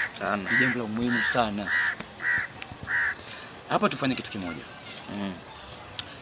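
A bird's harsh cawing call, repeated about six times at roughly two calls a second and stopping about three seconds in, over a steady high tone.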